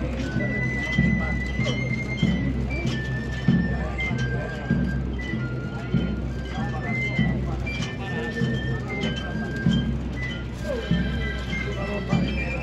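Band playing a processional march: a high melody in held notes moving step by step over a regular beat of low drums, with crowd voices under it.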